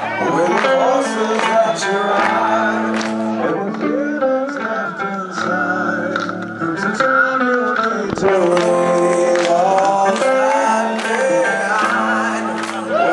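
Live rock band playing, with distorted electric guitar chords, drums and cymbals, and a male lead singer singing over them.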